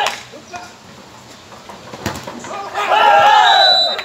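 A volleyball struck sharply at the start and again about two seconds in, then a loud shout lasting about a second from players or spectators near the end.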